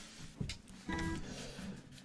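A single faint note on a Klapproth maple-and-spruce acoustic guitar, plucked about a second in and left ringing, after a soft tap just before.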